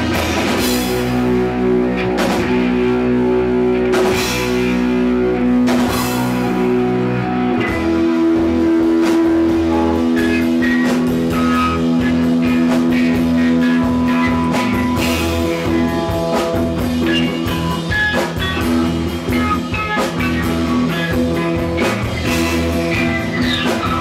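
A rock band playing live: electric guitars holding long chords over bass and drums, with several cymbal crashes and no singing in this passage.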